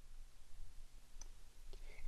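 A faint single computer-mouse click about a second in, over low steady room hum.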